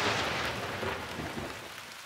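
Thunderstorm sound effect: rain with the tail of a thunderclap dying away, fading steadily.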